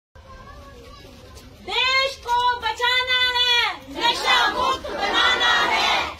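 Rally slogan chanting in call and response. A single voice calls out a drawn-out slogan in two long phrases, then a crowd of school students shouts the reply together in unison.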